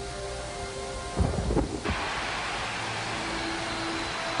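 Thunderstorm sound effect under a dark film score: a low rumble beneath held notes, then about two seconds in a sudden rush of rain-like hiss takes over.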